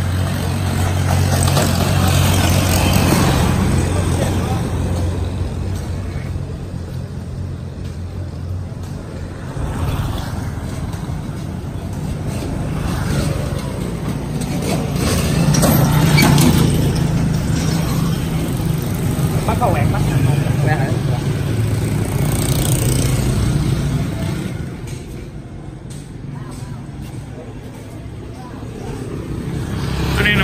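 Road traffic with motorbikes passing, the loudest being a motorcycle cargo tricycle going by close about halfway through, over a steady low engine hum.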